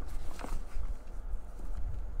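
Handling noise at a table as a Bible is looked up: low dull thuds and light rustling, with one soft click about half a second in.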